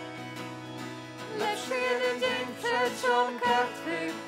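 Church worship band playing a slow song: a soft held chord, then a louder melody line comes in about a second and a half in.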